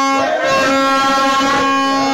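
A horn sounding a loud, steady single-pitched note. It breaks off briefly right at the start, then comes back as one long blast.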